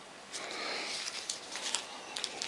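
Faint rustling and light crinkling of small packaged salt sachets from a ration pack as they are handled and set down, beginning about a third of a second in with a scatter of small ticks.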